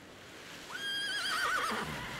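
Sound effects of rushing water slowly swelling. About two-thirds of a second in, a horse whinnies once with a wavering, falling pitch: the magical water horses rising from the water.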